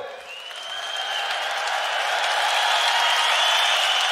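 Audience applauding. It builds over the first second or so and then holds steady.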